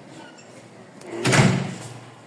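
A paneled door swinging shut with a single loud thud a little over a second in, fading over about half a second.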